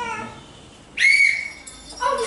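A single shrill, high-pitched note about a second in. It slides up briefly, holds one pitch for about half a second, then fades.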